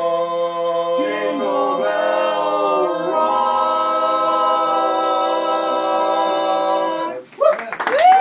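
Barbershop quartet of four male voices singing a cappella in close harmony, holding the song's final chord with a couple of shifts in the inner voices about one and three seconds in. The chord cuts off about seven seconds in, and a burst of cheering and clapping follows.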